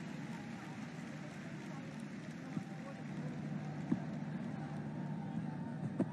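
Stadium crowd at a cricket match: a steady background of many distant voices and noise, with a few faint ticks.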